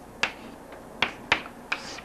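Chalk writing on a blackboard: about four sharp taps and clicks as the chalk strikes the board with each letter stroke.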